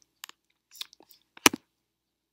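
A few quiet, short clicks close to the microphone, the sharpest about one and a half seconds in.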